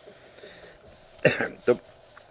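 A man gives a short cough, clearing his throat, about a second in, followed by a single spoken word.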